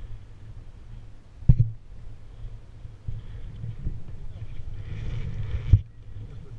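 Low rumble of wind on a helmet-mounted camera's microphone, broken by two sharp knocks on the helmet or camera, one about a second and a half in and one near the end.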